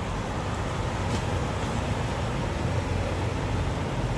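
Steady low rumble of idling diesel truck engines, an even drone with no single event standing out.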